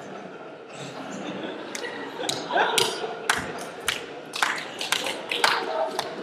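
A run of sharp knocks and thumps, about two a second, starting about two seconds in, over a murmur of voices. It is the soundtrack of a short comedy video played through the lecture hall's speakers.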